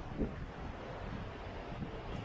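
Wind buffeting the microphone, with a short low gust just after the start, over the steady rush of ocean surf breaking on volcanic rocks.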